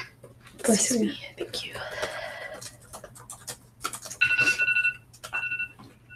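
A phone timer alarm beeps with a steady electronic tone near the end, stops, then sounds again briefly: the signal that the timed writing sprint is over. Earlier, a person gives a short loud vocal burst into her sleeve, with light laptop typing clicks around it.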